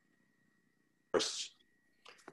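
A single sudden burst of noise a little over a second in, lasting under half a second, loud against a faint steady high tone and low hum.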